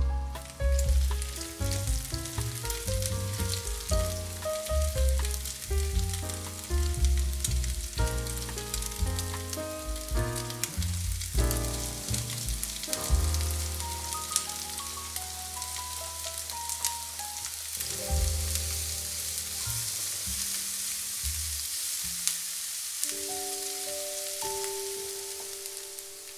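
Diced bacon sizzling in hot oil in a nonstick frying pan, with chopped onion added about halfway through and stirred in. The sizzle grows stronger toward the end.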